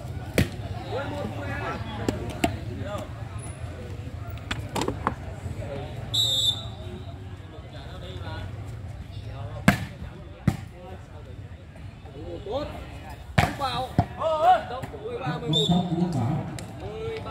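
Volleyball struck by hand during a rally on a sand court: a string of sharp slaps from sets and hits, one to a few seconds apart, the loudest about ten and thirteen seconds in. Spectators' voices and shouts run underneath.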